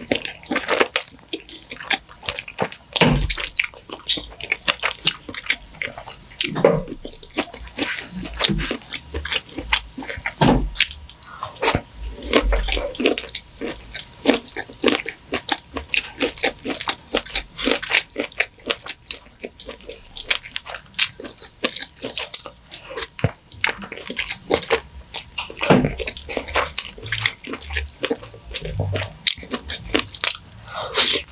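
Close-miked wet chewing and slurping of creamy fettuccine alfredo, with many quick, sticky mouth clicks and smacks.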